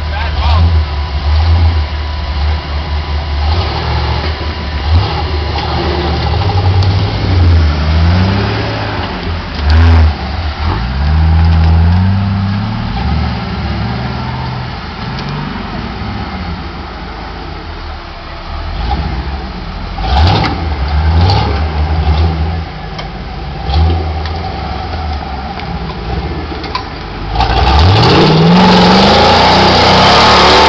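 Rock buggy's engine revving in repeated bursts and dropping back as it crawls up a rocky ledge, ending in a long, louder rev near the end as it powers up the climb.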